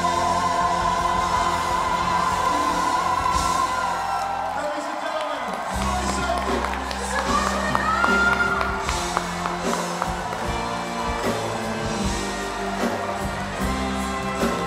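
Live duet of a female and a male singer with a full band, finishing a Broadway medley with long held high notes. Crowd cheering comes in over the music.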